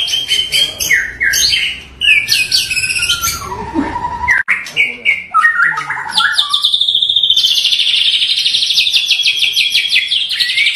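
Caged white-rumped shama (murai batu) of the Bahorok local variety singing: loud, varied whistled phrases, then from about six seconds in a long, fast run of rapidly repeated notes.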